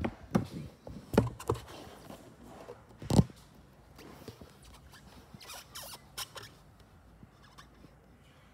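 Handling noise: scattered soft knocks, rustles and clicks as a phone is moved against a window and its flyscreen, with the loudest knocks about a second in and about three seconds in, then only faint ticks.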